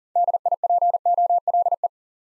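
Machine-sent Morse code at 40 words per minute: a single steady pitch keyed in quick dits and dahs for under two seconds, spelling the word DIPOLE.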